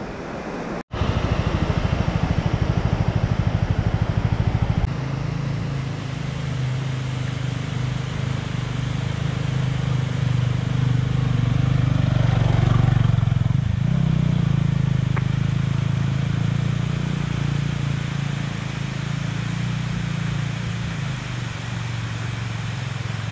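Motorcycle engine running at low speed under the rider, a steady low drone whose pitch shifts a little with throttle on a rough dirt track. A short change in the sound about twelve to fourteen seconds in fits an oncoming motorcycle passing.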